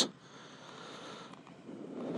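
Faint, steady outdoor background noise: an even hiss with no distinct event.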